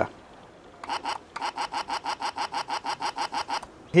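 A 'No' button novelty toy's speaker gives a rapid stuttering buzz of about eight pulses a second, starting about a second in. Fed from a 9-volt battery through a 330 ohm resistor, it is starved of current and cannot articulate the word 'no'.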